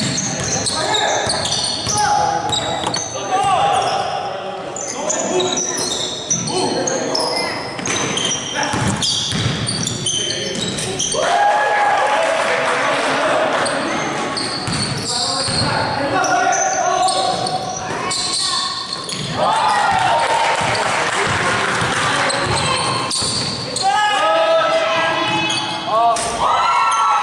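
Pickup basketball game in a gym: a ball dribbling on the hardwood floor, many short high-pitched sneaker squeaks, and players calling out indistinctly, all echoing in the large hall.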